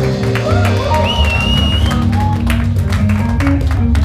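Live band playing reggae with a heavy bass line, regular drum-kit strokes and keyboards. A short gliding lead line sounds in the first half.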